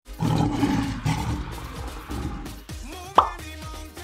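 Recorded lion roar used as an intro sound effect, loud and rough over the first second and a half. Intro music follows, with a sharp pop about three seconds in.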